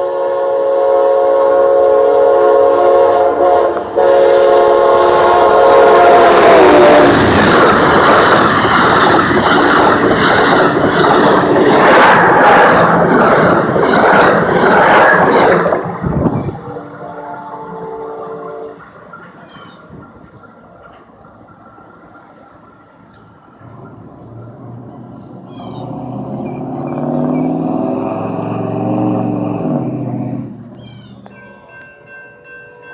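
A diesel passenger locomotive's multi-chime horn holds a long chord for about seven seconds, dropping in pitch as it passes. The loud rush and clatter of the train going by follows and cuts off suddenly about sixteen seconds in. Quieter train rumble with some tones comes later.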